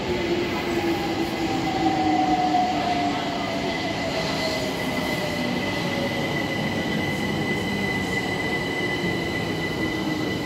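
London Overground electric multiple unit pulling into an enclosed underground platform, its traction motors whining in a slowly falling pitch as it brakes, over a dense bed of wheel and rail noise. A steady high tone runs underneath.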